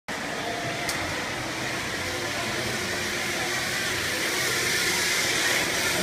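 Zip-line trolley running along its steel cable, a steady whirring rush that grows louder toward the end as the rider nears. A single sharp click comes about a second in.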